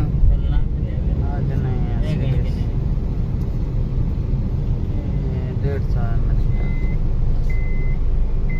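Car driving in city traffic, heard from inside the cabin: a steady low rumble of engine and road noise with faint voices. From about six and a half seconds, a short electronic beep repeats about once a second.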